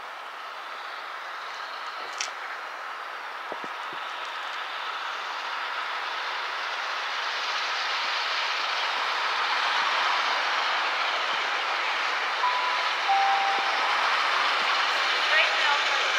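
LNER Thompson B1 steam locomotive 61306 'Mayflower' and its train approaching, a steady rushing noise that grows louder throughout. Near the end a short two-note chime sounds, the second note lower than the first.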